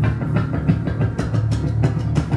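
Live rock band playing a fast song: drum kit hitting in a quick, even rhythm over electric bass and electric guitar.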